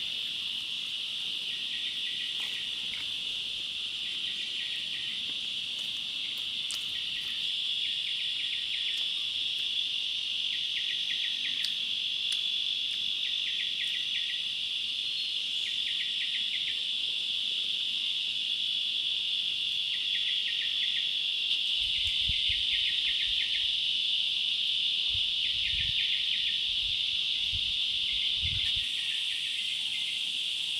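Forest insects with a steady, continuous high-pitched drone. Over it, another insect gives short pulsed trills every second or two. A few low muffled thumps come late on.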